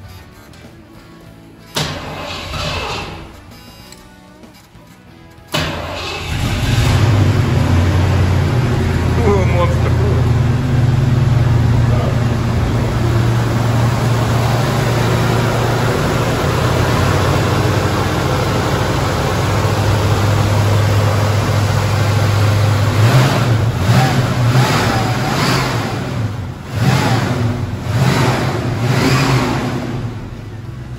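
1971 Ford Mustang's V8 engine starting about five seconds in, then idling steadily with a deep low rumble. From about two-thirds of the way through it is revved in several short surges before settling back.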